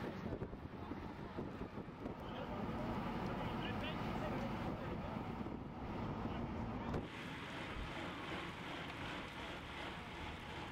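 Steady low rumble of a moving vehicle with wind buffeting the microphone.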